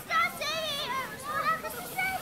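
A young child's high-pitched voice calling out in long, wordless sounds with a wavering pitch.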